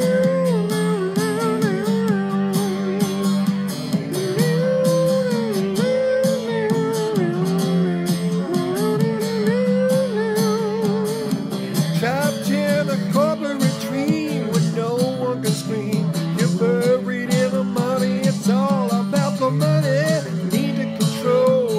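Rough voice-memo song demo, recorded on an iPhone: a guitar-based backing track playing in a home studio, with a wordless melody hummed over it as a first sketch of the vocal line. The melody line rises and falls in long arching phrases over steady chords.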